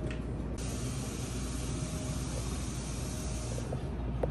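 Espresso machine steam wand hissing steadily, starting about half a second in and cutting off near the end, over a low café hum.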